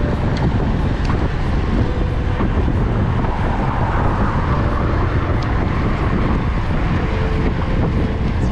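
Wind rushing over the microphone of a camera on a moving road bike, a steady low rumble, with road traffic under it.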